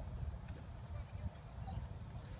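Wind buffeting the microphone: a low, uneven rumble, fairly quiet.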